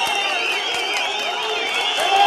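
Large crowd shouting and cheering, many voices overlapping at once.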